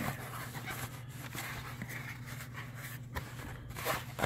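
Cardboard box flaps, a cardboard insert and plastic-bagged parts being handled inside a shipping box: a soft, steady rustle with a few faint knocks.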